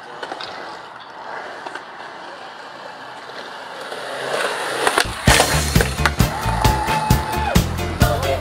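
Skateboard wheels rolling on concrete, a steady rolling rumble that grows louder over the first few seconds. About five seconds in, music with a heavy, steady beat starts and takes over.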